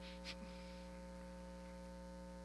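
Faint, steady electrical mains hum from the church's sound system, with quiet room noise and a small tap about a third of a second in.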